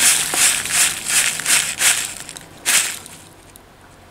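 Dry rolled oats shaken out in a run of pours into a plastic bowl: a rustling hiss that comes in pulses about three a second, stops a little after two seconds, and gives one last short pour near three seconds.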